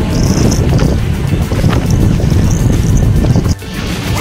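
Loud wind buffeting the microphone of a vehicle moving along a road, with music underneath; the noise breaks off briefly near the end.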